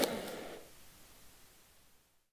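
Hall room noise fading out over the first half second or so, leaving near silence.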